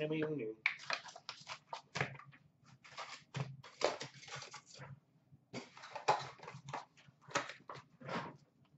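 A hockey card box being opened by hand, its cardboard and foil-wrapped packs rustling and crinkling in quick, irregular bursts, with a short pause about five seconds in.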